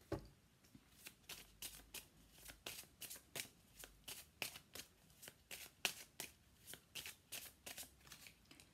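A deck of oracle cards being shuffled by hand: a quiet run of short, irregular card flicks and slaps, about three or four a second.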